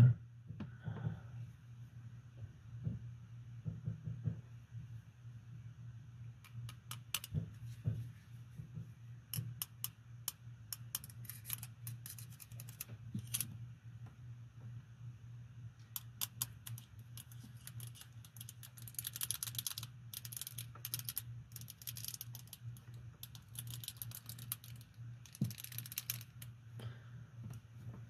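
Steel handcuffs being handled and worked on a wrist: scattered small metallic clicks, with several runs of rapid ratchet-like clicking in the second half, over a low steady hum.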